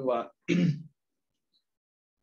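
A man's voice: a spoken phrase ends just after the start, and one short vocal sound follows about half a second in. After that there is silence.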